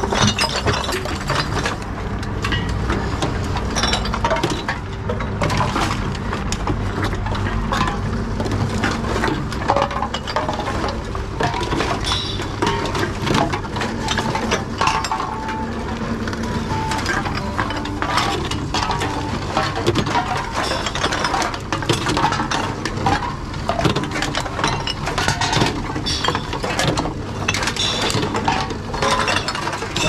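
TOMRA reverse vending machines taking in drink containers: a steady motor hum from the machine, with frequent clinks and clatter as aluminium cans and plastic and glass bottles are fed into the chutes and carried inside.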